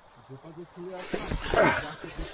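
A man's short wordless voice sounds and a breathy hiss, loudest about one and a half seconds in.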